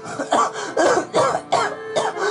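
A man sobbing into a handheld microphone in short, gasping bursts, about three a second, over background music with held notes.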